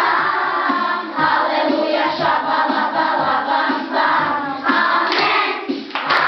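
A group of children singing an upbeat song together, with a steady beat about twice a second underneath.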